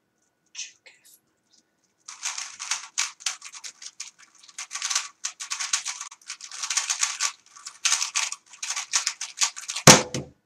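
3x3 Rubik's speed cube turned very fast in the execution of a blindfolded solve: a dense run of plastic clicking and rattling that starts about two seconds in, after a near-quiet stretch. Near the end, a single loud slap as the hands come down on the timer to stop the solve.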